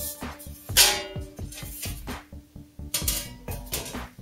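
Background music with a steady beat, over the clank and scrape of a steel sheet-metal chassis panel being lifted off the floor. The loudest clatter comes about a second in, with another near three seconds.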